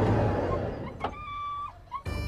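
A low rumbling outdoor noise, then a click and a short, steady high whine from a dog about a second in.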